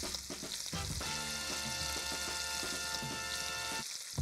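Chicken legs searing skin side down in hot fat in an enamelled cast-iron pot, a steady sizzle. A few short crunching clicks come in the first second as a pepper mill grinds over the pot, and a sustained music chord enters about a second in and stops just before the end.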